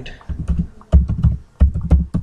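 Typing on a computer keyboard: a run of keystrokes, each a sharp click with a dull thump, coming in quick bunches as a username is entered.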